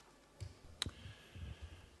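Desk conference microphone being switched on and handled: a few soft low knocks, then one sharp click just under a second in.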